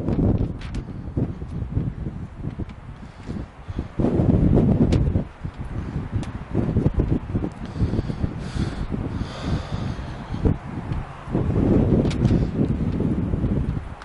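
Wind buffeting the microphone in irregular low gusts, strongest about four seconds in and again near twelve seconds, with a few faint clicks.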